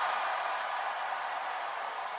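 Arena crowd cheering.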